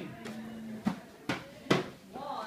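Hand-held frame drum struck three times, a little under half a second apart, each hit a short deep thud, the last the loudest.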